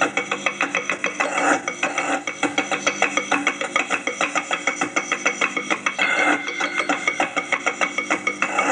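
Fast, continuous clicking and clattering, several clicks a second, over a faint steady hum.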